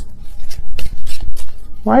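A small tarot deck being shuffled by hand: a quick run of sharp card clicks and snaps.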